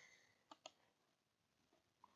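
Near silence, with two faint computer mouse clicks in quick succession about half a second in.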